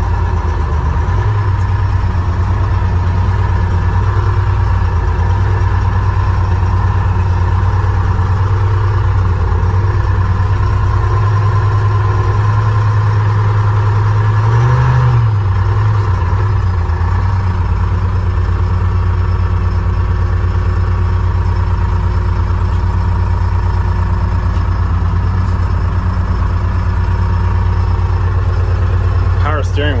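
Two-stroke Detroit Diesel engine of a 1976 International Loadstar fire truck running steadily while driving, heard from inside the cab, rising briefly in pitch about halfway through.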